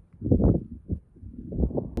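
Irregular low rumbling noise with a couple of swells, and a faint sharp click just before the end.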